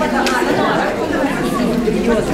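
Many people talking at once: a crowd of women and small children chattering over one another.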